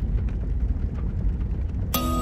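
A deep, steady rumbling roar with no clear pitch, a sound-effect bed under the opening. Right at the end a music chord strikes in.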